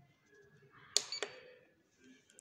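A sharp click about a second in, then a lighter one with a brief high electronic beep: the ZERO (tare) button of a Citizen electronic balance being pressed to reset the reading to zero.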